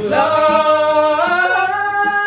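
Layered male voices singing in harmony, holding a long note that climbs to a higher sustained pitch about a second and a half in.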